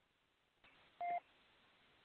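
A faint click, then a single short telephone keypad beep about a second in, as a caller's phone line is picked up.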